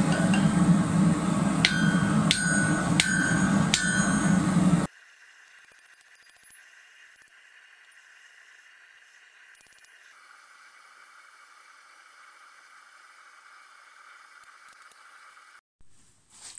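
Hammer striking a red-hot steel bar on an anvil four times in the first few seconds, each blow ringing, over a steady low drone. About five seconds in the sound drops to a faint hiss.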